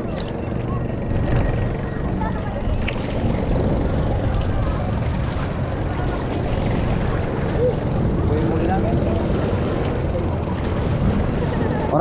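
Steady rumbling noise of wind on the microphone by the sea, with people's voices faint and indistinct beneath it.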